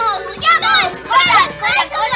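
High-pitched children's cartoon voices crying out in short excited shouts, one after another, over faint background music.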